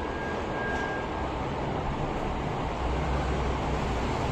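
Steady background rumble and hiss, with a faint thin high tone during the first second and a low hum that swells slightly near the end.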